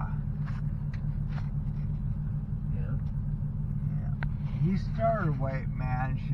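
Vehicle engines idling in traffic, heard as a steady low rumble from inside a pickup truck's cab.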